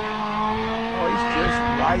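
Engines of a 1.6-litre Nissan Sentra, a 1.9-litre Ford Escort and a GMC Jimmy's 4.3-litre V6 racing flat out across a dirt field. They make a steady mix of overlapping engine tones at high revs.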